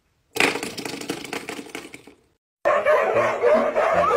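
A coiled-spring door stopper flicked by a finger, buzzing and twanging as it vibrates and dying away over about two seconds. Near the end a new sound starts: dogs, huskies among them, yowling with a wavering pitch.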